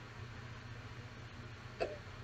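Faint background hiss with a low steady hum, the room tone of a voice-over microphone between sentences. There is one brief vocal sound from the narrator near the end.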